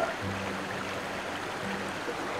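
Mountain stream flowing over rocks, a steady rush of water, with a faint low steady hum held through most of it.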